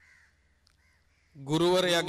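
A few faint bird calls in a quiet pause, then about one and a half seconds in a man's voice comes in loudly on a long drawn-out syllable of a Sinhala sermon.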